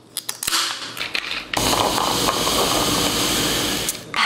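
Aluminium Coca-Cola can opened by its pull tab: a few sharp clicks and a hiss. About a second and a half in, a loud, steady fizzing of the carbonated cola takes over.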